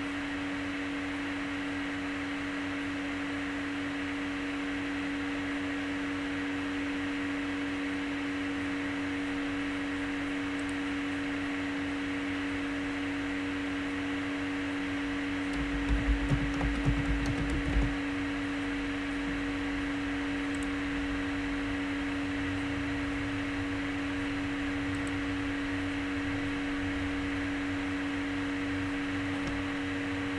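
Steady electrical hum and hiss of a recording made in front of a computer, with a constant low tone throughout. About sixteen seconds in there is a brief cluster of low thumps lasting about two seconds.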